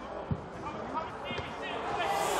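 A Gaelic football kicked, a single dull thud about a third of a second in, followed by players shouting calls on the pitch.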